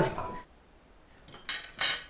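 Brief clinks and clatter of plates and cutlery being handled at a laid dinner table: a few short knocks starting a little over a second in.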